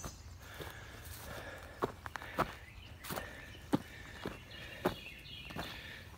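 Soft footsteps on loose dirt and grass, a light step roughly every half second.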